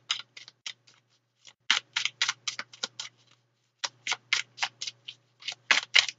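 A deck of tarot cards being shuffled by hand, the cards snapping against each other in quick crisp clicks, about six a second, in three runs broken by short pauses about a second in and past the halfway mark.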